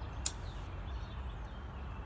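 A lighter struck once with a sharp click about a quarter second in, relighting a tobacco pipe, over a steady low background rumble.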